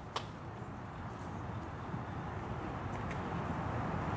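A last hand clap as the applause ends, just after the start, then steady low outdoor background noise that grows slightly louder.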